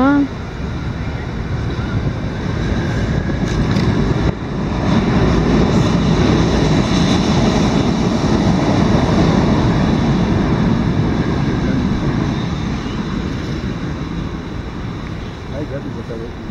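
Wind rushing over the microphone of a camera on a moving bicycle, rising about four seconds in, staying loud for several seconds, then easing toward the end.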